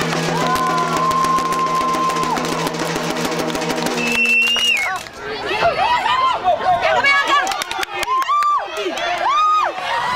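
Soccer spectators cheering and shouting after a shot on goal. A long, steady horn-like tone runs through the first four seconds or so.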